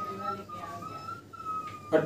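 Whiteboard marker squeaking as it writes: one steady, thin high squeal with a few short breaks, stopping just before the end.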